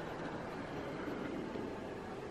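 Steady ambient noise in a large, empty terminal hall: an even hiss and low rumble with no distinct events.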